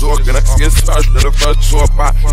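Hip hop track played backwards: reversed rapping vocals over a steady bass line and beat.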